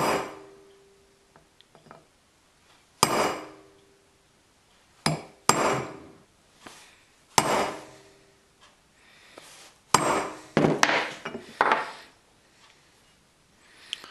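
Hammer striking a steel punch against an aluminum cylinder head, peening the metal around a heli-coil in the spark plug hole so it pinches the coil and stops it turning. The blows come a few seconds apart, then in a quicker cluster near the end, and some leave a brief metallic ring.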